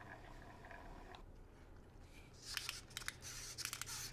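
Faint steady hum, then from about halfway in a run of light plastic clicks and rattles as a Zoids Storm Sworder plastic model kit is picked up and handled.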